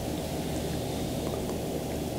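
Steady low background hum of room noise in a pause between speech, with no distinct event.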